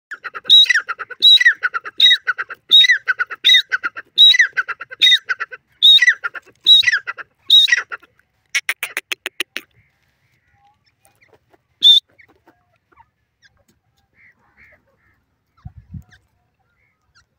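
Grey francolin (teetar) calling: a loud, high call phrase repeated about ten times, roughly every three-quarters of a second, for some eight seconds. It is followed by a quick run of about ten clipped notes, then one last single note a couple of seconds later.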